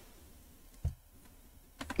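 A quiet pause with low room tone, broken by a single soft click about a second in and a few faint ticks just before speech resumes.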